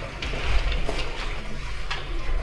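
Room noise: a low rumble with a few scattered light knocks and clicks as people move about and set up equipment.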